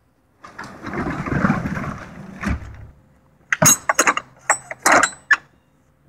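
A box truck's roll-up rear door being pulled down, rattling along its tracks for about two seconds and banging shut at the bottom. About a second later come several sharp metal clanks as the door's latch at the bumper is worked.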